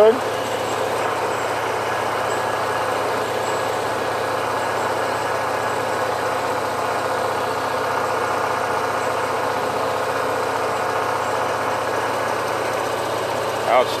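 Motorcycle engine running at a steady speed while riding, with road noise: one even drone with no revving or change in pitch.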